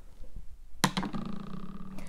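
A woman's voice holding one steady pitch for about a second, a short hummed or drawn-out vocal sound, starting a little before the middle.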